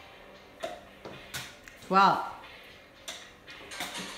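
Cardboard paper towel roll struck up into the air by hand and caught, giving two pairs of short, sharp taps, each strike followed by its catch less than a second later. A man counts a number aloud between them.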